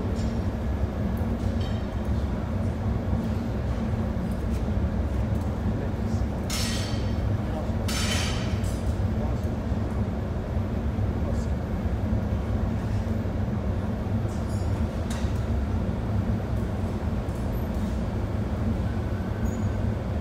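Steady low roar of a gas-fired glass furnace in a glassblowing workshop, with two brief hisses about six and eight seconds in and a few faint clinks of the glassblower's tools.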